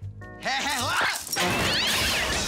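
Comic crash sound effect over background music: a wavering, yowl-like cry, then a noisy smashing clatter that starts about one and a half seconds in.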